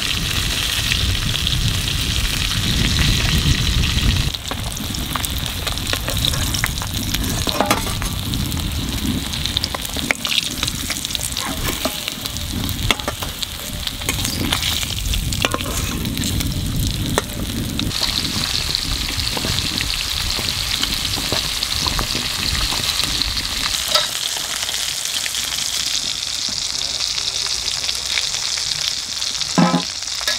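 Steady sizzling of food frying in hot oil, with scattered light clicks and scrapes.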